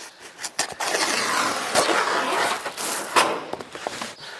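Synthetic roofing underlay (Thermakraft building paper) rustling and crinkling as it is handled and pulled into place, with a few sharp crackles among the rustle.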